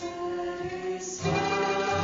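Two women singing a hymn in harmony, accompanied by acoustic guitar and a plucked mandolin. The singing grows louder and fuller about a second in.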